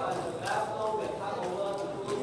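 Indistinct chatter of several overlapping voices, with a few scattered knocks and clicks.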